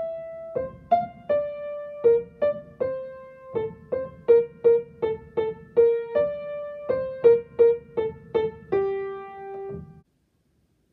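Piano playing the soprano line of a vocal duet as a single-note melody in G minor, one note struck at a time at an even pace. It closes on a longer held note that stops just before the end.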